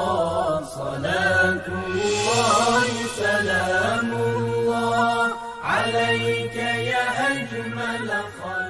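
Religious vocal chant: one voice singing long, ornamented, sliding melodic lines over a steady sustained drone.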